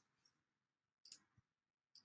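Near silence, with a faint click about a second in.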